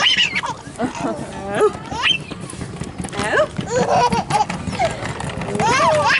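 Voices of young children and adults chattering and calling out, some high-pitched, mixed with scattered clicks and knocks.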